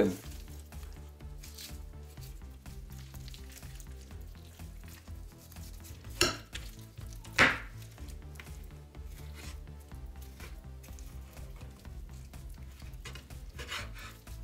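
A knife working on raw chicken over a wooden cutting board as the skin is cut and pulled off chicken thighs: quiet scraping and small clicks, with two sharper knocks about six and seven and a half seconds in.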